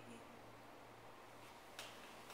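Near silence with a faint steady low hum, then one short click near the end as the camera is handled.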